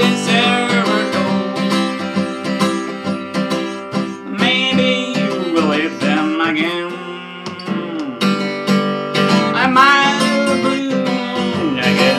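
Large-bodied acoustic guitar strummed in a steady rhythm, with a man's voice singing along in three phrases: at the start, in the middle and near the end.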